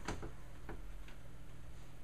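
A few soft clicks, most of them in the first second, over a low steady hum.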